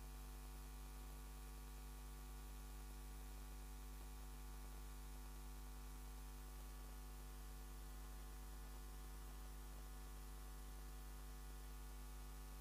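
Faint, steady electrical mains hum with a ladder of higher overtones over a light hiss, unchanging throughout; no watering or other action is heard.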